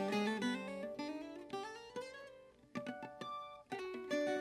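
Background music: an acoustic guitar picking single notes that ring and fade. It drops away to almost nothing a little past halfway, then a few more notes follow.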